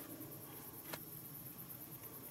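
Quiet outdoor night-time background: a faint steady hiss with one short click about a second in.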